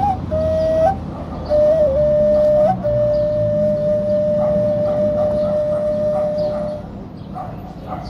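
Ney, an end-blown flute, here a homemade one of recycled aluminium tubing, playing the closing phrases of a slow Arabic meditation piece. A few short notes with a wavering ornament, then one long held note that fades out about seven seconds in, leaving a low street rumble.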